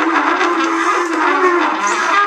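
Free-improvised jazz from tenor saxophone, trumpet, bass clarinet and cello playing together. A low held line wavers slowly in pitch beneath the busier overlapping horn and string parts.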